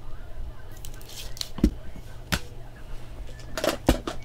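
Trading cards and plastic card holders being handled and set down on a table: a few light taps and knocks with brief rustles of plastic.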